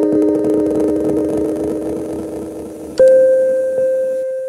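Vintage Japanese synthesizer played through a Behringer DD400 digital delay pedal: several held notes fade away with wavering, overlapping echoes. About three seconds in, a single new note is struck loudly and rings on.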